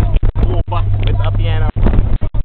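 Steady low drone of a moving bus's engine and road noise, with a voice over it; the sound keeps cutting out for split seconds.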